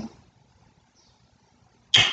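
Near silence, a pause in a man's speech: his drawn-out "um" trails off at the very start and his next words begin just before the end.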